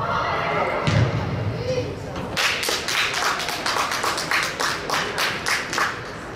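A shout and a dull thud about a second in, then a run of sharp handclaps, about four a second, lasting some three and a half seconds: players clapping a goal on an indoor football pitch.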